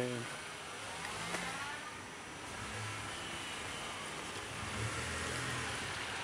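Passing road traffic: cars driving by on a street, a steady wash of tyre and engine noise with low engine hum rising and fading as vehicles pass.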